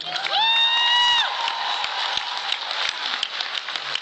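Audience applauding and cheering, opening with one high, held whoop about a second long, then a steady run of clapping.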